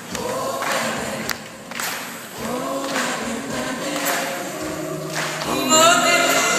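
Live concert singing from several voices together over band accompaniment, recorded on a phone from the audience in a large hall. The singing swells to its loudest near the end.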